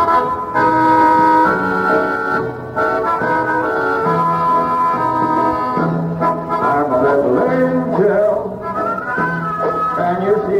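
A dance band playing the instrumental opening of a song: held chords, then a wavering melody line from about six seconds in.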